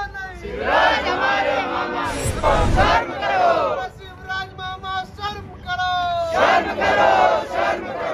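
Protesters chanting slogans in call and response: one voice leads with a line, and the crowd answers in unison with a loud shout. The group's answer comes about half a second in and again about six and a half seconds in, with the leader's line in between.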